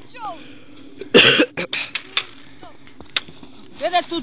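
A single loud cough close to the microphone about a second in, followed by a few sharp clicks, among voices.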